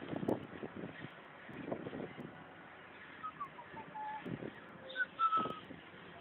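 A short whistled tune about halfway through: a run of quick notes stepping down in pitch to a held note, then two higher notes, the last one held. It sits over steady street background noise with a few low thumps.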